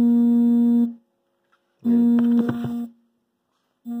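A held, buzzy note at one fixed low pitch, sounded three times: about a second long at the start, again about two seconds in for about a second with several quick clicks over it, and briefly near the end.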